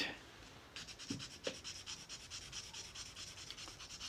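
Sandpaper rubbed by hand in quick, short back-and-forth strokes over a poured tin nose cap on a rifle's wooden forestock, about eight faint strokes a second, starting about a second in. It is being polished down to take out scratches and marks.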